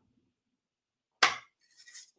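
Near silence, then a single sharp knock of a hard object about a second in, dying away quickly.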